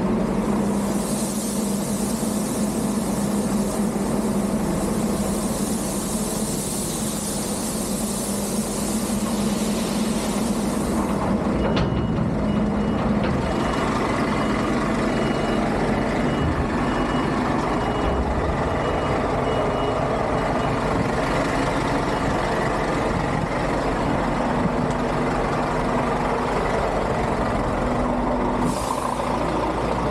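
Heavy diesel engines running steadily while a loader bucket tips grain into a bulk tipper trailer, the pouring grain a loud hiss for about the first ten seconds. Then a reversing alarm beeps for about ten seconds, and a short burst of air hisses near the end.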